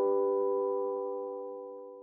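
A single chime of an end-card logo sting, several pitches sounding together like a struck chord, ringing out and fading steadily to almost nothing by the end.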